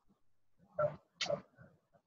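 Two short bursts of a person's voice, about a second in, much quieter than the talk around them.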